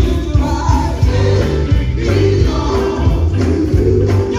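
Live gospel music: a woman singing lead into a microphone through the PA, over a band with a heavy bass line and steady drums.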